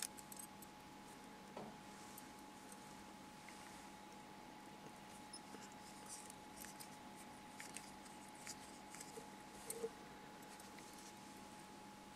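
Very quiet room with a steady faint hum, and scattered faint ticks and small clicks of hands working fly-tying materials and small scissors at a vise, a little louder about ten seconds in.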